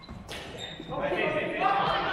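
A single sharp crack of a badminton racket striking a shuttlecock, followed from about a second in by people talking in a large gym hall.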